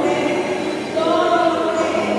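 A choir singing, the voices holding long, steady notes.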